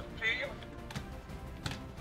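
Hard plastic toy parts clicking and tapping as a Voltron figure's leg is fitted onto a lion, with a short faint voice-like sound from the toy just after the start.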